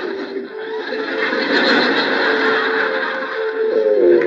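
Sitcom laugh track: a long swell of audience laughter, loudest around the middle, with soft background music underneath.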